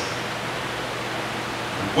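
Steady even hiss with a faint low hum, and no other sound.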